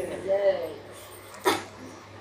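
A man laughing into a microphone: a short voiced laugh, then a sharp breathy burst about a second and a half in.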